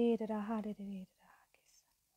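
Only speech: a woman's voice speaking a prayer for about a second, then trailing off into faint breathy sound and quiet.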